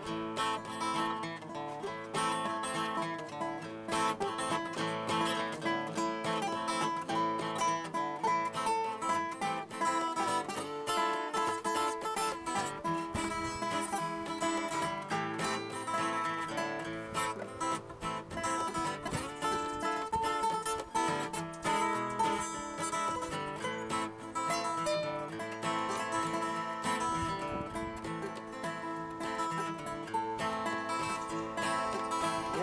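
Acoustic guitar playing a blues tune, strummed and picked in a steady instrumental passage with no singing.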